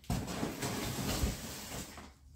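A long chromoly steel parachute-mount tube being slid out of a long cardboard shipping box: a steady scraping rustle of metal against cardboard and packing that starts suddenly and eases off near the end.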